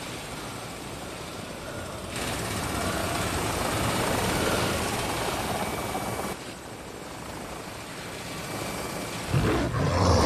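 Steady rumbling ambient noise from the film's sound design. It grows louder about two seconds in and drops back about six seconds in. Heavy low thuds begin near the end.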